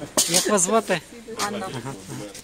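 Speech only: a person talking in an interview, with sharp hissing 's' sounds just after the start.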